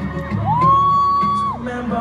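Live acoustic guitar playing through a concert PA. In the middle, a fan gives one high-pitched scream, held for about a second, gliding up at the start and dropping off at the end. The scream is the loudest sound.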